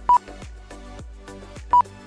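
Two short, loud electronic beeps from the lap-counting system, each a single steady tone, about a second and a half apart, marking cars crossing the timing line, over background music with a steady beat.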